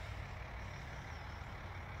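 Low, steady outdoor rumble with no distinct events.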